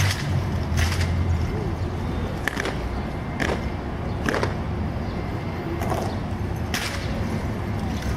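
Drill team soldiers' hands slapping and catching rifles fitted with steel bayonets in a rifle-spinning drill: a series of sharp, separate smacks, irregularly spaced about a second apart, over steady background noise.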